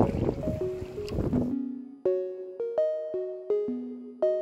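Background music: a melody of short struck notes, two or three a second, each dying away. For the first second and a half, wind and water noise from the open-air recording lies under it, then cuts off suddenly, leaving the music alone.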